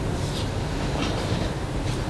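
Steady low background rumble of the room, with a few faint short rustles.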